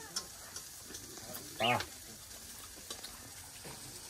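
A man's short 'aah' of enjoyment while eating, about a second and a half in, over a faint crackling hiss with a few small clicks.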